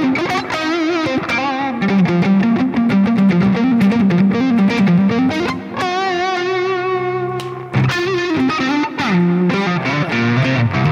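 Ibanez AZ24P1QM electric guitar played through its Seymour Duncan Hyperion neck pickup with the Alter switch engaged, giving a lightly overdriven melodic lead line with bends. A long note is held with wide vibrato a few seconds in.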